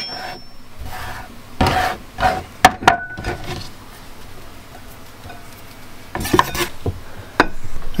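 Hands scooping chopped cucumber off a wooden chopping board and dropping it into a ceramic salad bowl: scattered sharp taps and knocks on the board and bowl over soft rustling and scraping, the loudest knock about two and a half seconds in.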